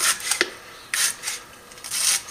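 Stiff 555 slot-insulation paper scraping against the steel slots of a 48-slot motor stator as it is worked down into a slot by hand, in about four short strokes.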